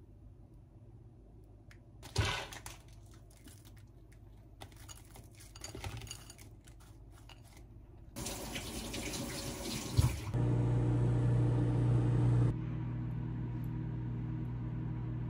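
Kitchen sounds: a knock about two seconds in and rustling, then water running from a tap for a couple of seconds. After a click, a steady low electric hum from a kitchen appliance starts, loud at first, then quieter but continuing.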